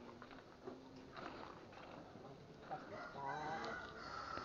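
A rooster crowing faintly, one wavering call lasting about a second, near the end.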